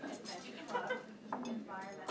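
Cutlery and dishes clinking in a string of sharp clicks, over the chatter of people talking.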